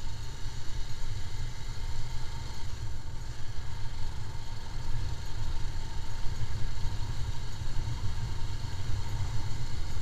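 Motorcycle engine running steadily while the bike is ridden along at low speed, heard as a rough low rumble with no change in pace.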